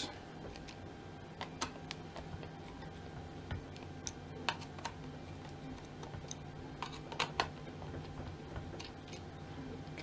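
Scattered small clicks and ticks of a screwdriver turning the speaker screws out of a Garrett AT Pro metal detector's plastic control box, at irregular intervals, with a couple of clicks in quick succession about seven seconds in.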